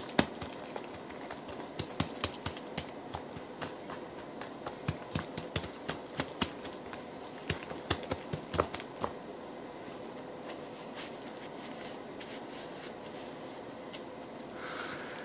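Hands patting and pressing wet bread mixture into a disposable aluminium foil pan, giving irregular soft pats and sharp crinkly ticks from the foil. The pats stop about nine seconds in.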